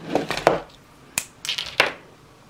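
Small plastic microphone mount and clip handled by hand: soft rustling and a few sharp plastic clicks, the sharpest just past a second in and two more near the end.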